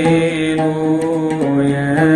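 A man chanting a Coptic hymn melody in long held notes with a slight vibrato, stepping between pitches, over oud accompaniment.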